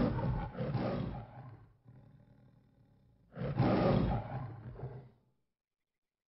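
The MGM logo's lion roar: a roar fading out about two seconds in, a low growl, then a second roar from about three seconds in that ends about five seconds in.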